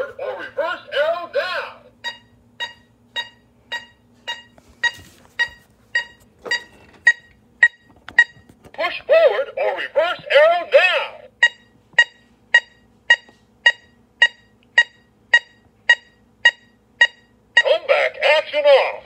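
Battery-powered toy Hummer H2's small electronic speaker playing its sound effects: warbling electronic chirps, then a long run of short regular beeps about two to three a second, with another burst of warbling about halfway through.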